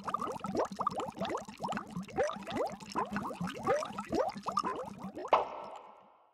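Cartoon bubbling sound effect: a busy, rapid string of short rising plops like bubbles in water, ending with one louder burst near the end that fades away.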